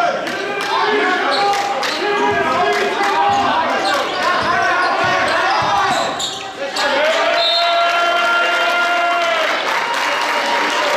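Basketball being dribbled on a hardwood gym floor, with a string of sharp bounces, under constant spectator shouting and chatter in a large echoing gym. In the last three seconds one long held call rises above the crowd.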